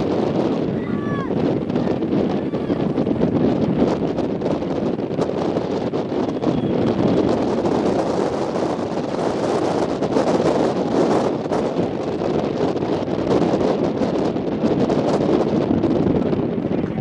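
Wind buffeting the microphone in a steady, gusty rush, with indistinct voices from spectators underneath.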